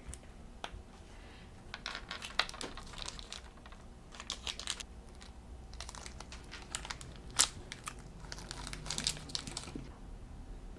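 Small plastic GoGo Gachas toy capsule being opened by hand: bursts of plastic crinkling and clicking, with one sharp click about seven seconds in.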